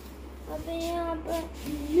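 A child singing a few short, held notes.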